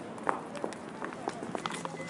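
Quick footsteps on a tiled floor: a string of light, uneven taps.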